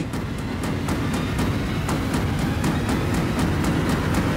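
Tense background score: a low, dense rumble under a fast, even ticking pulse of about four to five beats a second.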